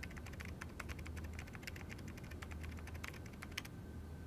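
Faint, quick typing on an HP laptop keyboard: a steady run of light key clicks.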